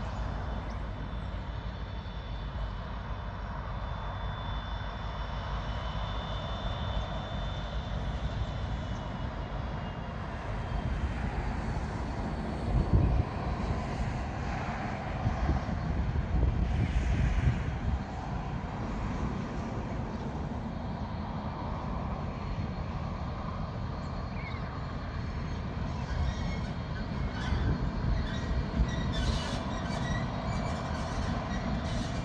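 Distant diesel-hauled freight train approaching, a steady low rumble of locomotives and wheels on the rail. Louder low rushes come and go around the middle.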